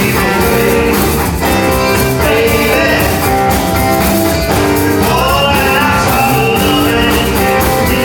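A live band playing a bluesy rock-and-roll number: strummed guitars, electric bass and drums, with fiddle playing held and sliding notes over them.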